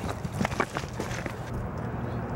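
Footsteps on loose beach stones, with a few sharp clicks of rock knocking on rock, thickest about half a second in.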